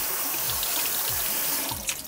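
Kitchen tap running a steady stream of water into a bowl of short-grain sushi rice, rinsing off the milky starch; the flow fades out near the end.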